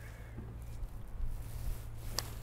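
Quiet outdoor background with a steady low hum and faint hiss, and no distinct event, while a putter is drawn back before the stroke.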